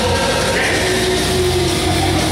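Loud heavy rock music playing steadily, with held pitched lines like a sung or guitar note.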